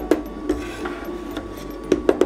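Two metal spatulas scraping and tapping on the stainless steel cold plate of an ice cream roll machine, mixing a runny ice cream base that is still slow to freeze. There is a sharp clack at the start and another near the end, with softer scraping between.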